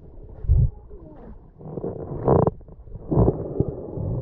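Muffled underwater rumbles picked up by a camera in a waterproof housing while snorkelling, with three louder low surges: about half a second in, a little after two seconds, and a little after three seconds.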